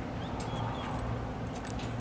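Steady low background hum with a few faint light clicks.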